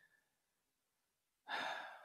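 Near silence, then about one and a half seconds in a man takes a short, audible breath.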